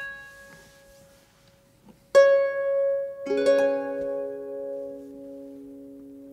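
Irish harp plucked slowly. One note rings and fades, a fresh note sounds about two seconds in, and a lower note joins a second later. Both are left to ring and die away.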